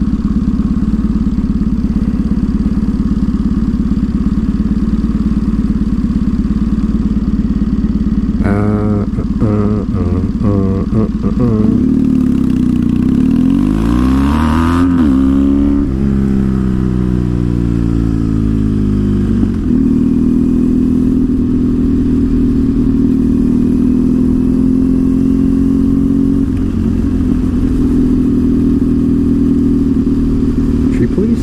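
Triumph Thruxton parallel-twin motorcycle engine idling steadily at a stop. The revs then rise and fall a few times, climb in a long rising pitch as it pulls away, drop back, and settle into a steady cruise.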